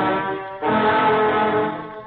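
Opening theme music of a 1938 radio serial: long held brass chords, one after another with a brief break between them.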